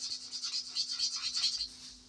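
Marker tip scribbling back and forth on paper over a clipboard, colouring in a small square with several quick strokes a second; the scribbling stops shortly before the end.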